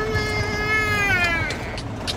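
A toddler's long whine held on one pitch, sliding down and stopping about one and a half seconds in.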